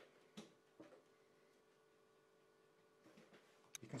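Near silence: room tone with a faint steady hum and a few soft clicks, the first few close together about a second in and more shortly after three seconds.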